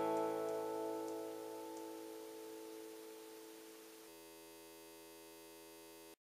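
Final chord of an acoustic guitar ringing out after the last strum, slowly dying away until it is very faint.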